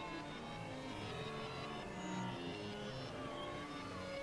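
Experimental electronic synthesizer drone music: a dense low rumbling drone under many short held tones at scattered pitches, with a tone that dips and rises in pitch near the end.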